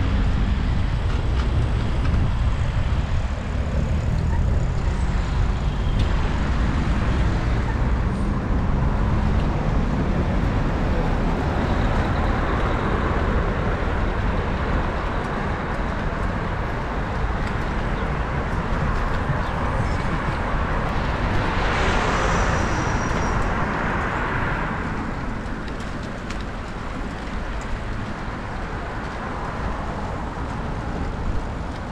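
Road traffic passing on the adjacent road, heard as a continuous noise over a steady low rumble of wind on the microphone of a moving bicycle. About two-thirds of the way through, one vehicle passes closer and louder, then fades.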